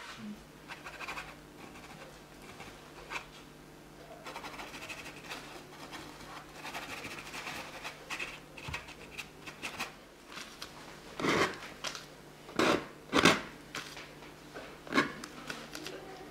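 Bristle paintbrush scrubbing oil paint onto a stretched canvas: faint scratching throughout, then about four brisk, louder strokes in the last few seconds.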